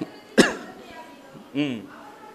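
A man's single short cough into a microphone, sharp and loud, about half a second in, followed about a second later by a brief voiced syllable.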